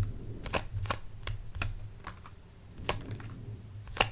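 Tarot deck being shuffled by hand, the cards giving a string of sharp, irregular clicks as they slap against each other.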